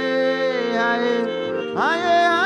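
Worship music: sustained held chords under a man singing into a microphone, with a new sung phrase sweeping up in pitch near the end.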